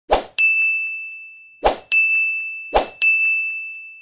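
End-screen button sound effects: three short whooshes, each followed at once by a single bright ding that rings out and fades. The pairs come about a second and a half apart, then about a second apart.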